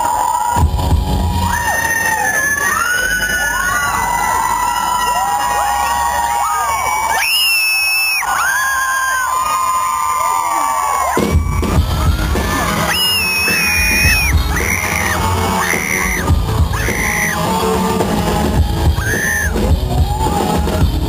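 Live rock band: a lead melody sung into the microphone over guitar, the drums and bass dropping out for a few seconds and then crashing back in with the full band about eleven seconds in, with a crowd yelling and cheering.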